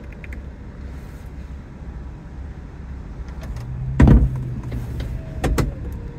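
BMW E93 electro-hydraulic retractable hardtop finishing its closing cycle: a steady mechanical hum as the rear deck lowers, one loud clunk about four seconds in as the roof locks, and a few sharper clicks near the end.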